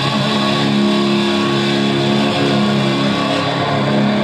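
Electric guitar playing sustained, ringing chords, the notes held steady with little attack.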